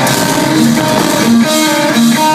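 Loud live metalcore band: electric guitars playing a melodic line of held notes over bass guitar and drums.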